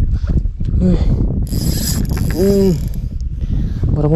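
Spinning fishing reel ratcheting with rapid clicks as a hooked barramundi pulls against the bent rod, with a brief high hiss in the middle.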